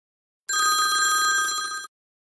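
A bell-like electronic ringing tone, several steady high pitches sounding together with a fast flutter, starting about half a second in and stopping after about a second and a half.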